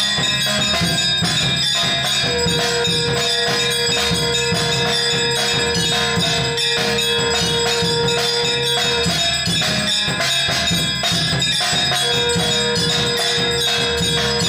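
Temple aarti music: bells and drums struck in a fast, steady rhythm. A long held note runs from about two seconds in to about nine seconds and starts again near the end.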